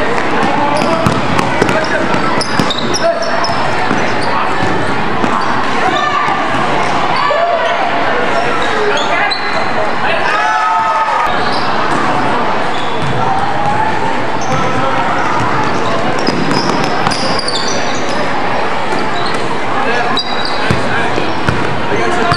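Basketball being dribbled and bouncing on a hardwood gym floor, with sneakers squeaking, over steady chatter and calls from players and spectators in a large echoing hall.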